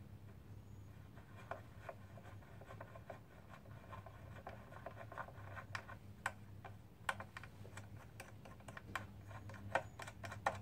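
Ratchet wrench with a socket extension being worked on a bolt, its pawl clicking in short irregular runs that grow louder and closer together in the second half, over a faint low hum.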